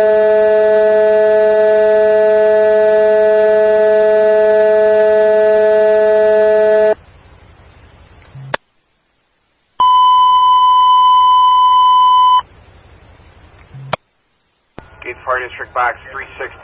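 Fire-dispatch alert tones over a scanner radio: a loud, steady, low buzzy tone held for about seven seconds, then a click and a short silence. Next comes a higher steady tone for about two and a half seconds, another click and a gap, and a dispatcher's voice starting near the end.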